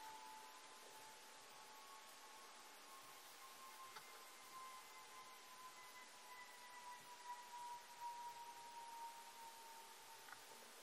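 Near silence: quiet room tone with a faint, steady high whine that drifts slowly lower in pitch.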